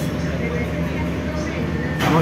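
Steady low hum and even rushing noise inside a moving cable-car gondola cabin.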